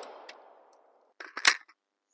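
The echo of an AR-15 rifle shot fired just before dies away over the first half second. About a second and a half in come a few sharp clicks and a knock.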